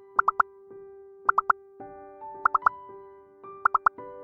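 Soft background music of sustained held chords. Over it comes a quick triplet of short, bright popping notes that repeats about every 1.2 seconds, four times.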